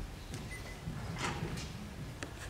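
High-heeled footsteps clicking on a wooden stage floor, a few spaced steps.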